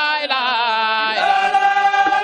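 Sufi religious chanting by voices: a lead voice with wavering pitch over a steady held note, and a new, fuller phrase begins about a second in.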